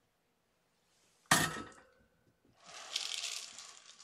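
A sharp knock or clink about a second in, briefly ringing, then about a second of rustling.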